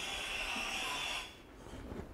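A steady soft hiss that fades out a little over a second in, followed by quieter low sounds.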